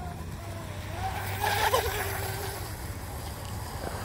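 Faint whine of a 12-inch micro RC hydroplane's Hobbywing 2030 7200 kV brushless motor as the boat runs its laps, the pitch wavering and swelling briefly about a second and a half in. A steady low rumble lies underneath.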